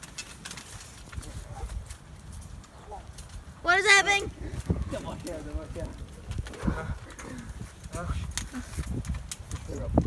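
Irregular thuds of feet and bodies moving on a trampoline mat as people grapple, with a loud high shout about four seconds in and a few shorter vocal sounds just after.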